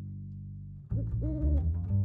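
An owl hooting: two long, arching hoots starting about a second in, over background music with a held low string note.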